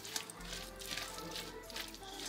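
Quiet background music, with faint soft scrapes of a utensil tossing salad in a stainless steel bowl.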